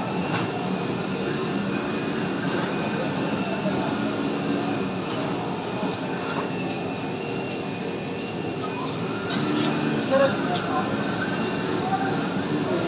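Steady mechanical drone of an automatic fabric-cutting table and the machinery around it, with faint voices about ten seconds in.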